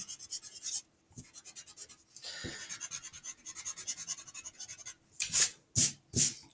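Pencil eraser rubbing back and forth on paper in quick, even strokes, cleaning up stray pencil lines. A few louder swishes come near the end.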